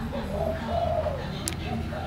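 Caged spotted dove cooing: a low call that sags in pitch, followed by a shorter note, with a sharp click about one and a half seconds in.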